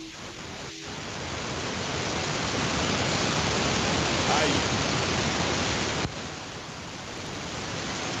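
Loud hiss of static on a caller's phone-in line, swelling over the first couple of seconds and dropping a little about six seconds in, with a voice faintly under it. The host blames a fault with the caller's microphone.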